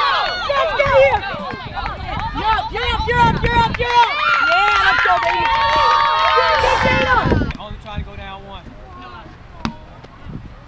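Many women's voices shouting at once, overlapping high-pitched yells and calls. About seven and a half seconds in they drop off to a few scattered, quieter calls. A single sharp knock comes near the end.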